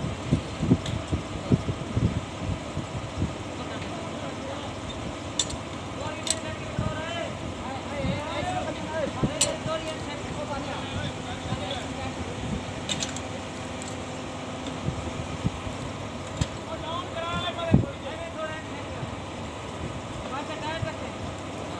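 Engine of a truck-mounted crane running steadily, with faint voices calling now and then and a few sharp knocks, the loudest near the end.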